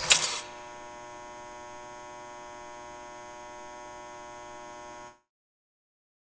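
A loud noisy burst ends about half a second in. It gives way to the steady electrical hum of a neon sign, a rich buzz with many overtones, which cuts off suddenly about five seconds in.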